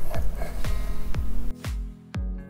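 Background music with a steady beat, about two beats a second; the fuller backing drops away about one and a half seconds in, leaving mainly the beat.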